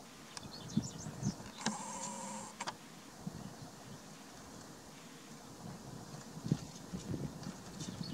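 A camera lens zoom motor whines for about a second, a wavering tone with a hiss that starts and stops sharply, as the lens zooms out. Around it are faint small ticks and rustles.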